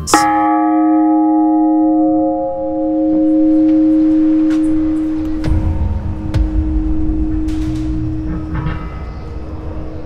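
A single stroke of a large bell, ringing on in one long tone that slowly fades. About halfway through, a low rumble with scattered clicks joins in.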